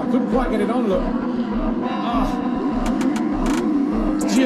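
Motocross dirt bike engine revving up and down on the track, over a background beat with a low thump about every two-thirds of a second.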